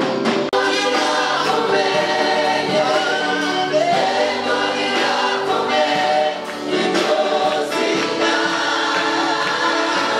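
A choir singing together in harmony, several voices holding long notes.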